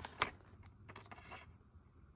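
Black plastic DVD keep case being swung open and handled: one sharp plastic click just after the start, then a few faint clicks and rubbing.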